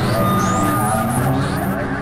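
Experimental synthesizer drone music: a dense, noisy rumble layered with steady held tones and short rising glides high up.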